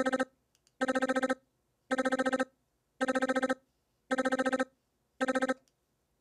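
PPG Phonem vocal synthesizer playing a tempo-synced chain of the syllable 'da' on one steady pitch: six short bursts about a second apart, each a rapid stutter of about eight syllables, with silence between them. The silent gaps are the empty second half of the LFO's sweep through the phoneme positions, because its gain is still at full rather than 50%.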